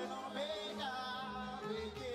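Live gospel praise music: a voice singing long, sliding held notes over steady band accompaniment.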